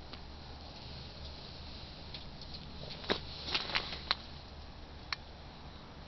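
Wood fire burning in a large homemade steel rocket stove: a steady low background with a handful of sharp crackles and pops, bunched about three to four seconds in and one more a second later.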